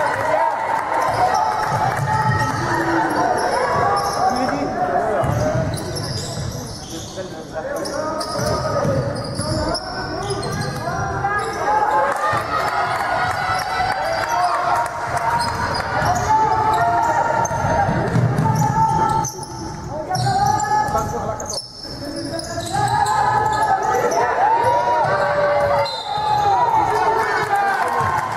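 A basketball dribbled and bouncing on a hardwood gym floor during live play, with players' voices calling out in the hall.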